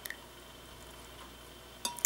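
Faint pouring of whipping cream from a small measuring cup into egg mixture in a glass measuring jug, with one light clink near the end.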